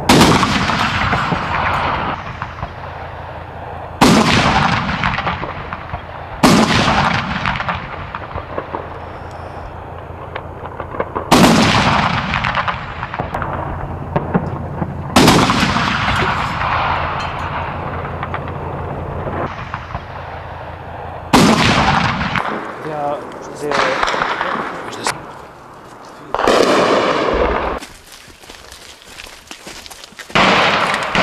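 Wartime weapons fire at night: about seven loud reports at irregular intervals a few seconds apart, each followed by a long rolling echo that dies away over several seconds. A steady low hum runs under the first two-thirds and then stops.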